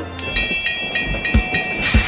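Cartoon steam-train sound effect: a chugging beat about three times a second, with a steady high whistle held for most of the time, over background music.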